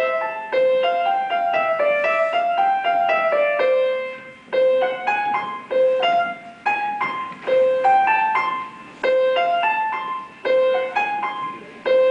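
Solo piano playing a simple melody in short phrases that keep coming back to the same middle note, each phrase opening with a firm struck note. There is a brief pause about four seconds in.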